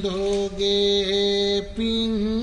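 A man's voice chanting Sinhala verse in the melodic style of kavi bana, holding long drawn-out notes. Near the end the line breaks briefly and resumes on a higher note.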